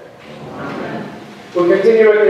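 A soft, brief rustling noise during a pause in speech, then a man's voice starts again about one and a half seconds in.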